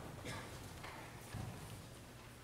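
Faint footsteps of a person walking, about three steps roughly half a second apart.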